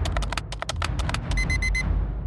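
A fast run of sharp clicks, like keystrokes, for about the first second, then two groups of four quick, high electronic beeps, like a digital alarm clock.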